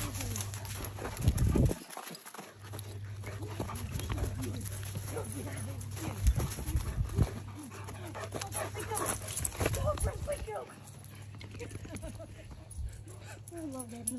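A dog running and playing, its paws thudding on the ground in several bursts, with a steady low hum underneath.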